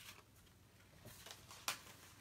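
Near silence: room tone with a few faint ticks and one sharp click near the end.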